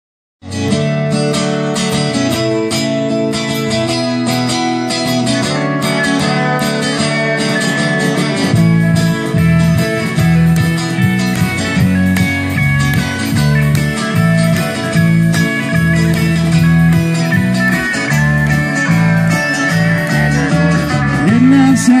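Live band playing the instrumental intro of a country-rock song on acoustic and electric guitars with drums; a heavier low bass part comes in about eight seconds in.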